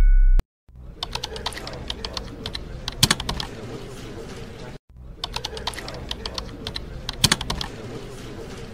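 Computer keyboard typing: two runs of irregular key clicks with a brief break about halfway. A loud low drone cuts off suddenly just before the typing begins.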